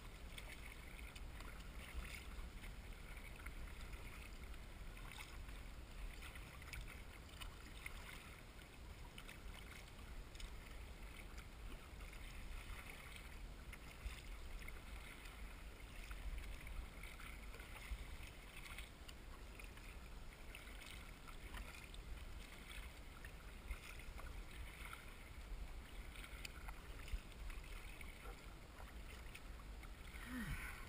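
Faint water lapping and splashing against the bow of a narrow kayak and the paddle blades dipping, uneven and continuous, over a steady low rumble of wind on the microphone.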